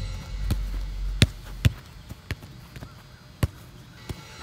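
A soccer ball being passed and controlled on grass: about five sharp, separate thuds of foot on ball, the loudest a little over a second in and again about three and a half seconds in.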